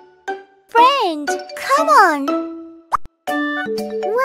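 Children's music with held notes and two high, childlike exclamations, each rising then falling in pitch, about a second apart. A quick rising plop comes near the end.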